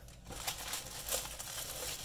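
Clear plastic bag around a plastic model kit sprue crinkling irregularly as it is handled.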